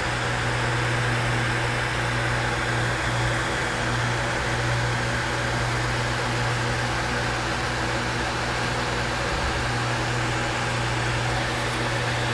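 A steady machine hum with a strong low tone and a few fainter steady tones above it, over an even hiss, unchanging throughout.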